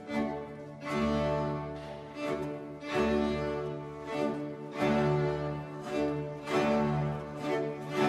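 Period-instrument Baroque string ensemble with continuo playing an instrumental passage of sustained chords in repeated strong bow strokes, with no voice.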